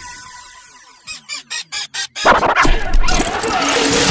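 Edited intro sound effects: a fading tone, then a rapid stutter of about six short pulses that come faster and faster, breaking into a loud swell that builds toward music.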